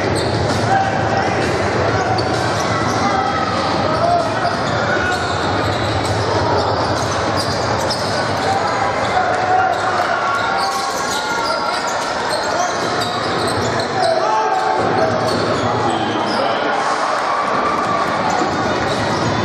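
Basketball game in a gymnasium: a steady murmur of crowd chatter with a basketball bouncing on the wooden court, echoing in the large hall.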